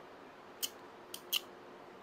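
Orange-handled hand crimping-kit tool being squeezed and worked in the hand: three short, sharp metal clicks, the last two close together.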